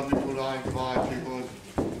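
A person's voice speaking in short, drawn-out syllables, with a sharp knock near the end.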